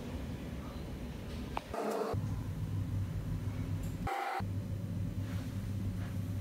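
Steady low background hum with faint noise above it, broken twice by brief dropouts where the low hum vanishes for a moment.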